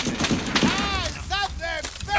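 War-film battle soundtrack: a dense din of gunfire with men's voices shouting high and strained over it.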